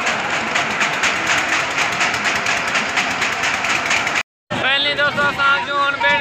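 Busy fairground din: many voices mixed with machinery noise from the rides, cut off abruptly about four seconds in. A single clear voice follows straight after the cut.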